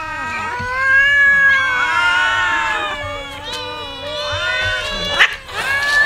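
Many cats meowing at once, dozens of overlapping long calls rising and falling, as a hungry crowd waits to be fed. A single sharp knock cuts through a little after five seconds in.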